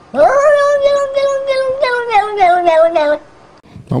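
A domestic cat giving one long, drawn-out meow of about three seconds, steady at first and then sliding slowly down in pitch before it stops.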